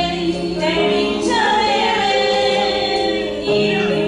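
A small group of women singing a church hymn together, holding long notes.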